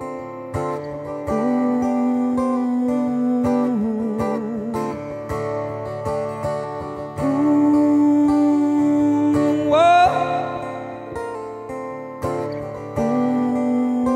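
Acoustic guitar strummed under a male voice holding long, wordless notes with vibrato. The voice slides up in pitch about ten seconds in.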